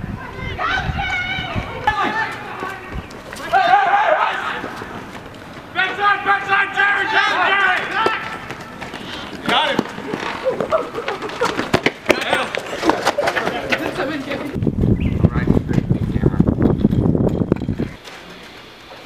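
Several people yelling and shouting as they run, with the patter of running footsteps; a loud low rushing noise, like wind buffeting the microphone, fills the last few seconds.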